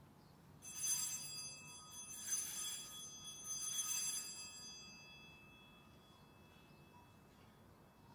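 Altar bells rung three times as the chalice is elevated at the consecration, each ring bright and high-pitched, the ringing fading out about five seconds in.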